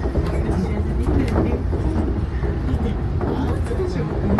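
Steady low rumble of a suspended monorail car running along its track, heard from inside the car.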